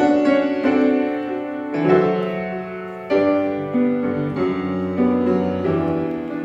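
Piano playing slow, sustained chords, each struck and left to fade, changing about every second and a half: the opening of a gospel-hymn accompaniment.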